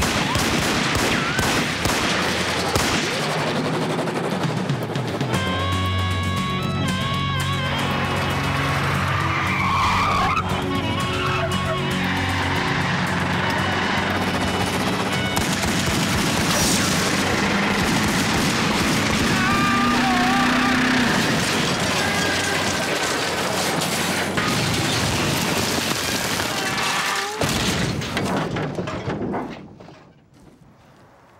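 A dramatic music score mixed with car-chase sound effects: car engines and tyre skids. The sound cuts off sharply near the end.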